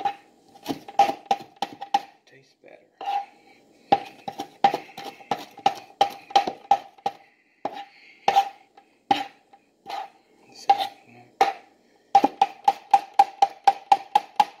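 Large kitchen knife chopping fresh spinach on a cutting board: sharp knocks of the blade on the board, each with a short ringing note, coming in irregular bursts and then a quick steady run of about four chops a second near the end.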